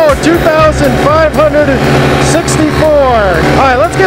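Blackhawk paramotor engine running steadily at climbing throttle, a low drone heard under a man's voice.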